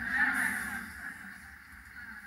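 The echo of a man's amplified voice dying away over about a second into faint, steady room noise, in a pause between sentences.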